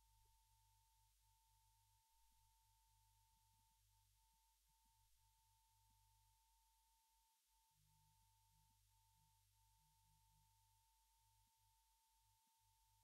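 Near silence: a very faint steady tone with a low hum beneath it, the tone breaking off briefly a few times.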